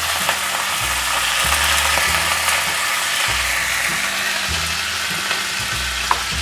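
Cauliflower florets frying in hot mustard oil in a wok, a steady even sizzle.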